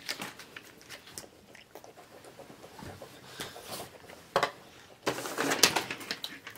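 Paper sheets rustling and being handled at a table, with faint scattered light knocks, a sharp click about four seconds in and a louder rustle of paper near the end.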